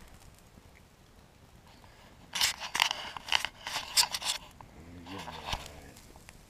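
A quick cluster of rustling, scraping clicks about two seconds in, then a short low vocal sound from a man near the end.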